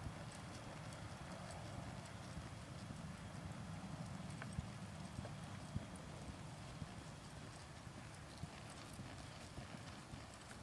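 Faint hoofbeats of a two-year-old filly loping under saddle on a soft dirt arena.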